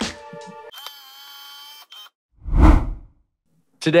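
Edited transition sound effects: a music sting ends, a bright shimmering chord of high tones rings for about a second, then a deep whoosh with a low boom about two and a half seconds in, the loudest sound.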